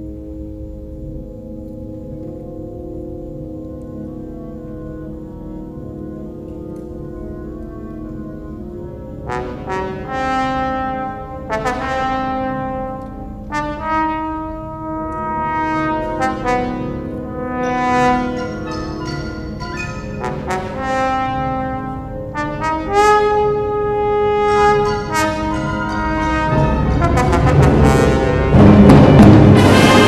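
Symphonic wind band playing: soft, sustained low chords, then brass phrases (trumpets, trombones, euphonium and tuba) entering from about nine seconds in and building to a loud full-band climax near the end.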